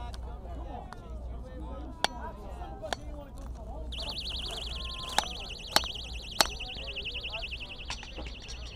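Hammer blows on a small prop rail: five sharp strikes. About four seconds in, a high, rapidly warbling electronic alarm starts and keeps sounding.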